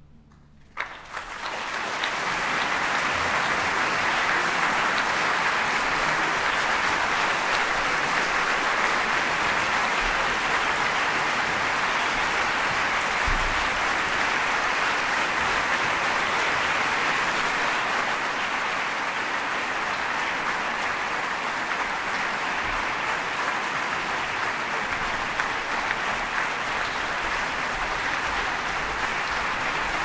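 Theatre audience applauding. After a brief hush the clapping breaks out about a second in and holds steady as a dense, even applause.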